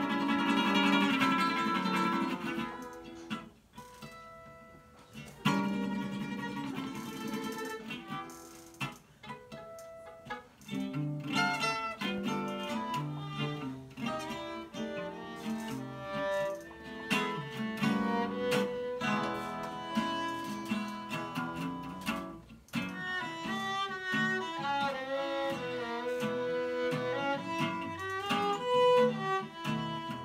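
Acoustic guitar and fiddle playing an instrumental song introduction as a duo. It opens with a few strummed guitar chords separated by quiet pauses, then settles into continuous playing from about eleven seconds in, with the fiddle melody standing out near the end.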